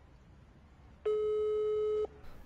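Telephone ringback tone: a single steady beep about a second long, starting about a second in, heard as a phone call rings at the other end.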